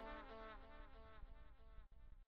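Faint buzzing of a fly, wavering slightly in pitch as it fades away.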